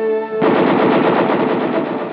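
Machine gun clamped in a test-firing stand, firing one long continuous burst of rapid automatic fire that starts about half a second in.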